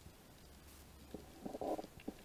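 Underwater sound picked up by a diving camera: scattered faint clicks over a low hum, with a louder, short gurgling rumble about a second and a half in.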